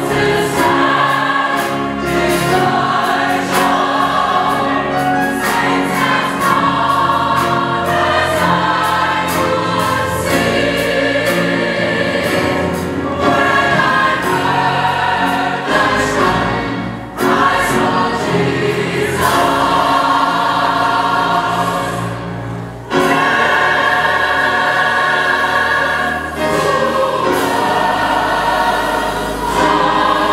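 Large mixed choir singing a gospel song in full harmony, breaking off briefly twice past the middle and coming straight back in.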